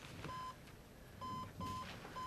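Cardiac monitor beeping once per heartbeat: one short high tone repeated three times, a longer gap before the second and the third following quickly. The monitor is picking up a returned, slow heart rhythm (sinus bradycardia).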